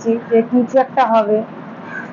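A woman's voice for about the first second and a half, a few short utterances ending in a falling drawn-out sound, then only low room tone.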